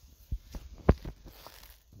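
Footsteps through grass and dry leaf litter, with a sharp knock a little under a second in as the loudest sound.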